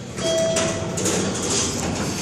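Isralift traction elevator arriving at the landing: a single steady arrival chime sounds for under a second, starting about a quarter second in, while the doors slide open with a rumbling rattle.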